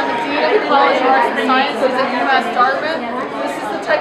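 Speech: a woman talking, with other people's chatter behind her.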